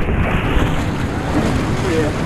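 Whitewater of a river rapid rushing and splashing close by, loud and steady.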